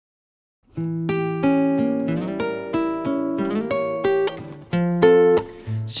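Near silence, then about a second in a guitar intro starts: single picked notes ringing into one another in a melodic pattern.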